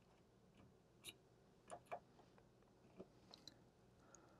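Near silence with a few faint small clicks as multimeter probe tips are pressed against the alarm panel's AC terminal screws.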